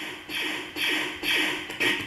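A blaster laser-fire sound effect played as a digitised WAV by an ESP32 through its DAC pin, a small amplifier and a speaker, looping over and over at about two shots a second, each a quick zap falling in pitch.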